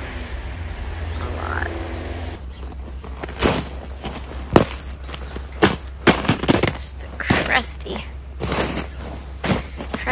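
Boots crunching through an icy crust on snow in walking steps, a series of sharp, irregular crunches that begin about two seconds in.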